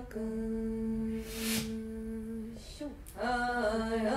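Women humming a ritual chant: one long steady note, a short break, then a new phrase with moving pitch begins about three seconds in. A short breathy hiss sounds near the middle.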